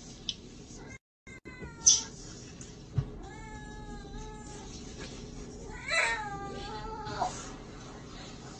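Kitten mewing, three drawn-out cries in a row, the last rising and then falling in pitch.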